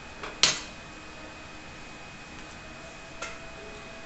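A rolling pin set down on a hard worktop: one sharp knock about half a second in, just after a lighter touch, and a faint tap near the end, over a faint steady high whine in the room.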